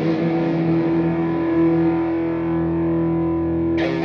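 Overdriven Red Special–style electric guitar played through AmpliTube amp simulation, holding one sustained distorted note that rings on and slowly mellows. Quick picked notes start just before the end.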